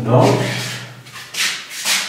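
Two short rubbing strokes of a felt-tip marker writing on a whiteboard, about a second and a half in and just before the end.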